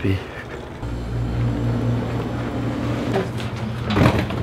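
Elevator car running with a steady low hum that starts suddenly about a second in, ending in a sharp knock as the car arrives.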